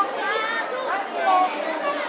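Crowd chatter in a large hall, with many adults and children talking over each other and no single voice standing out.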